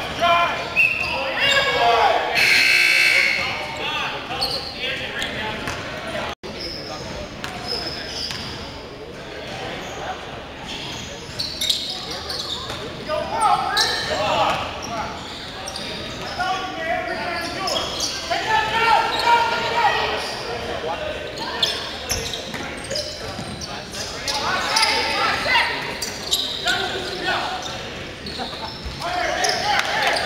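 A basketball bouncing on a hardwood gym floor during play, with players' voices calling out, echoing in a large gymnasium.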